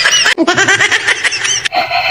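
Excited, high-pitched voices shouting to run, cut off abruptly about a third of a second in and again near the end, where a steady held tone takes over.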